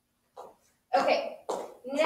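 A woman coughing twice, about a second in and again half a second later, then starting to speak near the end.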